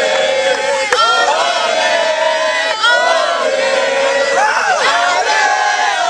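A group of boys' and young men's voices chanting together in a loud, sustained mass of voices. Sharp shouts break in twice, about a second in and near three seconds in.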